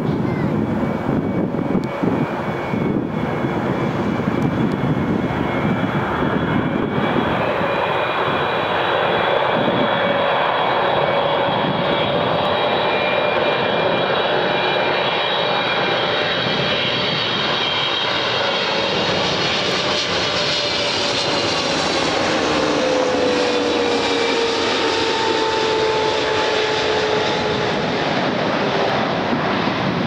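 Boeing 777-300ER's twin GE90 turbofan engines on final approach to land: a steady jet roar with a high fan whine over it. In the second half, tones in the sound slide slowly down in pitch as the airliner passes.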